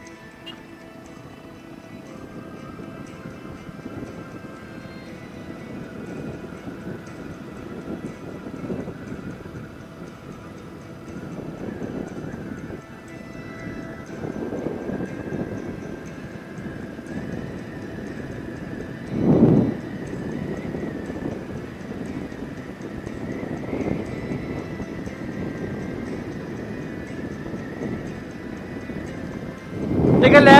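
Motorcycle running at cruising speed, its engine mixed with wind noise, with a brief louder whoosh about two-thirds of the way in.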